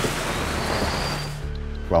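Rushing whoosh of an electric car speeding past, with a faint high whine rising in it. It fades out about a second and a half in, giving way to low sustained music tones.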